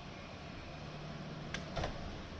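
An SUV's front door being shut: a sharp click followed by a low thud near the end, over a steady low hum.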